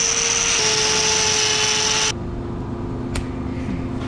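Hand-held angle grinder with a hoof-trimming disc grinding cow hoof horn: a steady high whine over a grinding hiss, dipping slightly in pitch about half a second in as it bites, then cutting off about two seconds in, leaving a lower hum and one sharp click near the end.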